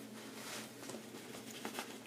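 Faint fabric rustling and a few light clicks as a tote bag's trolley sleeve is slid down over the telescoping handle of a rolling suitcase.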